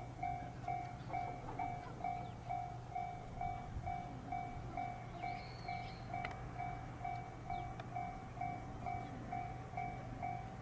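Japanese railway level crossing alarm bell ringing steadily, an even two-tone ding repeating about twice a second, warning that a train is about to pass. Under it runs the low steady hum of a standing electric commuter train, with one sharp click about six seconds in.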